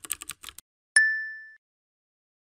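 A quick run of about eight sharp clicks, like typing, then a single bright ding about a second in that rings out and fades over about half a second.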